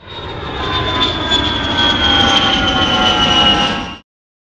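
Airplane engine sound effect: a loud jet-like whine over a noisy rumble, its pitch sliding slowly downward as if the plane were passing. It swells in quickly and cuts off abruptly.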